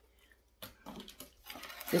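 Handling noise of decorative signs being put down and picked up: rustling and a few light knocks starting about half a second in. A spoken word begins right at the end.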